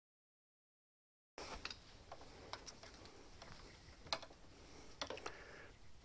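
Silence for over a second, then faint handling noise with a few sharp, isolated clicks and taps as a gloved hand routes electrical wire along a lawn mower's metal handle.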